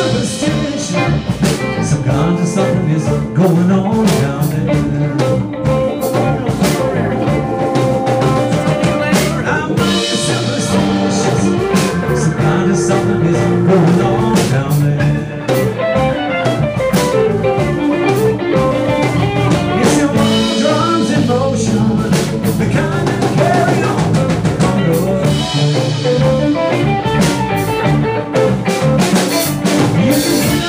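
Live blues-rock band playing: electric guitars with bending, sliding lead lines over bass and a drum kit, with a man singing.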